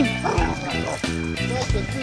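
A dog barking in rough play with another dog, over background music.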